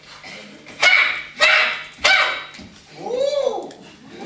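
Actors' shouted yells during a staged quarterstaff fight: three short loud yells in quick succession, then a cry that rises and falls in pitch near the end.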